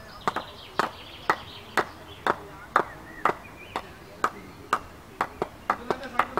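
Sharp knocks at an even pace, about two a second.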